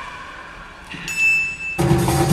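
A brief high steady tone sounds about halfway through. Then, near the end, the live circus band comes in suddenly with drums and percussion.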